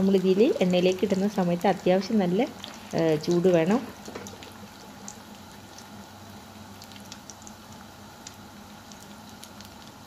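Chicken doughnuts deep-frying in a pan of hot oil: a steady sizzle with faint crackles, heard under a voice for the first four seconds or so and on its own after that.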